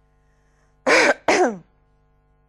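A woman clearing her throat in two quick bursts about a second in.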